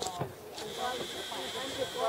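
Several people talking at once in the background, with no one voice in front. A steady, thin high-pitched tone comes in about half a second in and holds.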